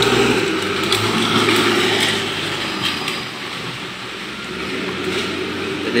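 Diesel engine of a John Deere backhoe loader running steadily, easing off a little in the middle and picking up again near the end.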